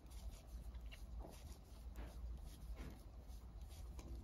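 Knitting needles and cotton yarn being worked through stitches: faint, scattered light clicks and rustles.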